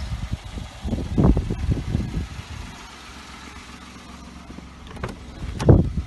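Low rumbles and handling noise on the microphone, over a faint steady low hum, then one loud thump near the end as the car's door is opened.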